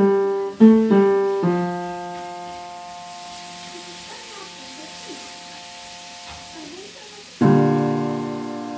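Piano played slowly. A few chords are struck in the first second and a half, then one chord is held and left to fade for about six seconds, and a loud new chord is struck near the end.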